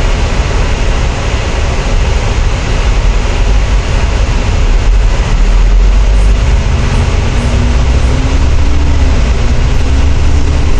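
Volvo B10TL double-decker bus's Volvo D10A six-cylinder diesel running at idle, then pulling away: from about halfway through the low engine sound grows heavier and louder, and a faint whine rises in pitch as the bus gathers speed.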